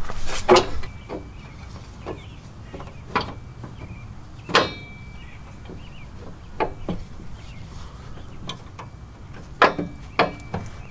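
Metal winch hook being handled and hooked up at the front of a pickup. There are scattered sharp clinks and knocks, the loudest about four and a half seconds in with a short metallic ring, and a cluster of knocks near the end.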